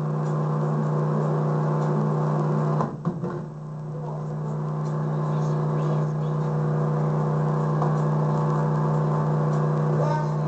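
A steady low hum of several held tones that does not change in pitch, briefly dipping and wavering about three seconds in.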